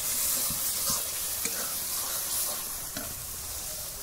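Spice masala sizzling in hot oil in a metal wok (kadhai), stirred with a metal ladle that scrapes and clicks against the pan now and then. The oil has begun to separate from the masala, the sign that it is nearly fried through.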